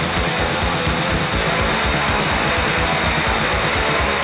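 Recorded hardcore punk song: distorted electric guitar, bass and drums playing a fast, steady beat.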